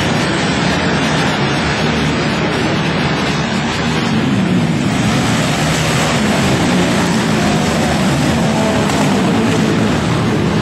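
Flat-track racing motorcycles running hard around an indoor track: a loud, steady engine noise with pitches that waver up and down as the bikes circulate.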